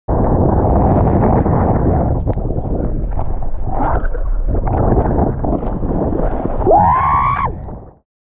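Strong wind buffeting the camera microphone, with water rushing underneath, while kitesurfing at speed. Near the end a short pitched cry rises and then falls.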